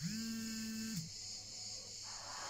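A woman's voice giving a single hum, a level held note about a second long that drops away at the end, over a faint steady hiss.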